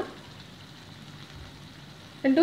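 Faint, steady sizzle of spiced mutton masala frying in a wok.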